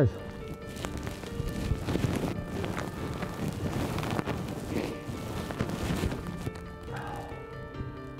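Background music with steady held notes, over irregular rustling and soft knocking sounds.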